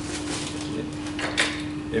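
Metal test sieves clinking and scraping against each other as they are lifted off a stacked sieve column and set down, a few sharp metallic clicks, over a steady low hum.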